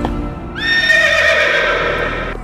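A horse's long whinny, starting with an upward sweep about half a second in and holding, wavering, for nearly two seconds, over background music.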